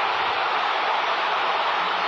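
Football stadium crowd cheering, a dense, even wash of noise that holds steady.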